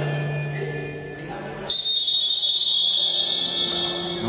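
A basketball referee's whistle blown in one long, steady, shrill blast of about two seconds, starting suddenly a little under two seconds in, over background music and voices in the hall.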